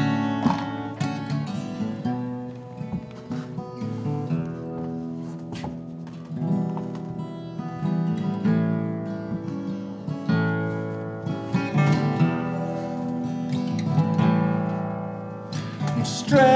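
Acoustic guitar playing the instrumental intro of a folk song, chords struck in a steady rhythm.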